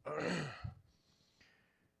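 A man clearing his throat at a pulpit microphone: a breathy, voiced exhale falling in pitch, ending in a short low catch, followed about a second and a half in by a faint breath.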